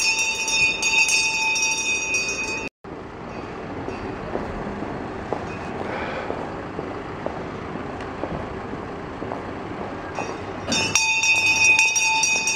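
A town crier's brass handbell rung continuously, a sustained bright ringing that cuts off abruptly about three seconds in. After a stretch of steady outdoor background noise, the ringing starts again near the end.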